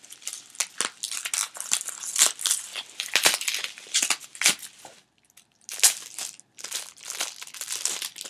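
Plastic wrapping around a small memo pad crinkling rapidly as it is handled and pulled open, with a short pause about five seconds in before the crinkling resumes.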